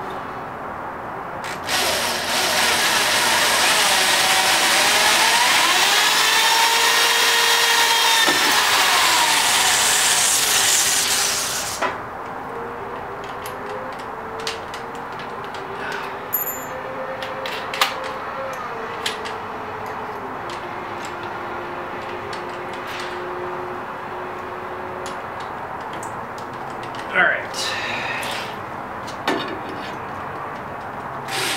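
Electric drill boring a hole through a go-kart's engine mounting plate. It runs for about ten seconds, its motor whine dipping and rising as the bit bites. After it stops there is a faint steady hum with scattered small clicks, and a louder knock near the end.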